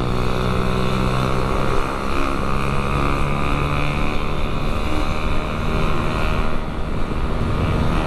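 Motorcycle engine running under way as the bike gains speed, with steady wind rumble on the mic.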